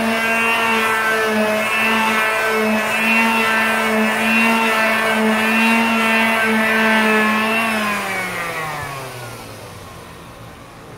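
Electric palm sander with a green scouring pad running steadily as it scrubs old pallet adhesive off a wet aluminium shirt board. About eight seconds in it is switched off and its motor winds down, falling in pitch and fading.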